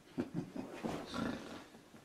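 A man chuckling quietly in a few short, breathy bursts.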